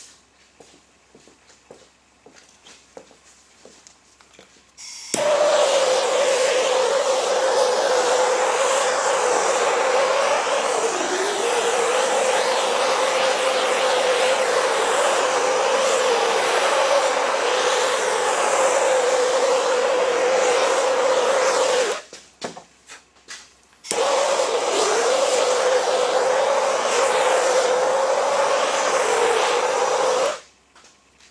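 Handheld gas torch with a yellow fuel cylinder burning, its flame hissing loudly and steadily with a steady tone as it is played over a fresh epoxy resin pour to pop surface bubbles. The flame starts about five seconds in, cuts out for about two seconds a little past the middle, then starts again.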